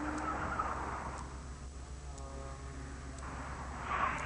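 BMW sedan braking hard from about 45 mph while turning in without locking a wheel, the sign of trail braking done right. Its tires rush on the pavement, a faint short tire squeal comes about two seconds in, and the rush rises again near the end.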